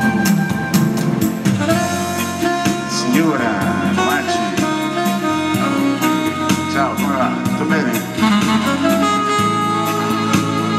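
Live jazz band playing an instrumental break in a bossa nova song: a lead melody with wavering pitch over a steady beat and low accompaniment.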